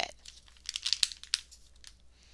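Pages of a paperback book being turned, a quick run of crisp paper rustles between about half a second and a second and a half in.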